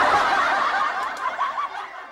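Burst of canned laughter over a ringing chime note in a closing jingle; the laughter fades away near the end while the chime rings on.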